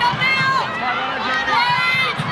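Women players shouting high-pitched calls on the field, over the steady murmur of the stadium crowd.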